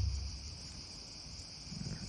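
A pause in speech filled by a steady high-pitched hiss, with a faint low murmur of voice at the start and again near the end.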